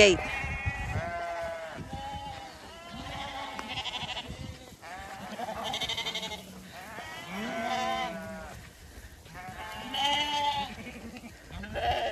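A flock of Zwartbles sheep bleating over and over, a long wavering call about once a second from several animals.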